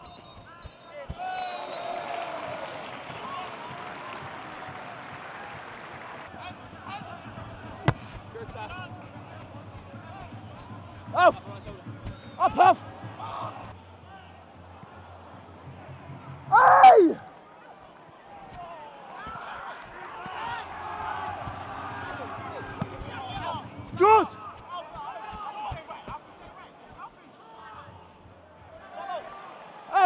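Live professional football match: a steady murmur of spectators, with players' short shouted calls now and then, the loudest a little past halfway, and scattered dull thuds of the ball being kicked.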